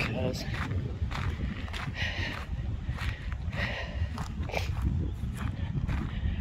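Wind rumbling on a phone microphone, with footsteps crunching on a dry grass and gravel verge at walking pace.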